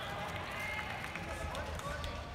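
Voices of a large arena crowd, many people calling and talking at once over a low, steady rumble.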